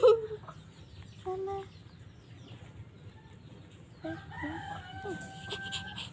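A rooster crowing once in the second half: a wavering start that settles into one long held note, then breaks off.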